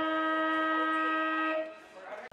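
A single long horn blast at one steady pitch, cutting off about one and a half seconds in.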